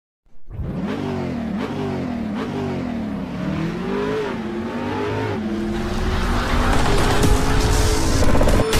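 A car engine revving, its pitch climbing and dropping back about once a second, then holding a steadier, higher note as a hiss builds towards the end.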